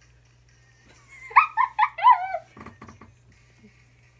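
Four short, high-pitched yelps in quick succession, the last one sliding down in pitch, followed by a few quick knocks.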